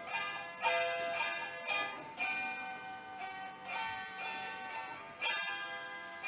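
Hammered dulcimer (Polish cymbały) played alone between the verses of a folk ballad: struck metal strings ringing out in chords, with new strikes every second or so.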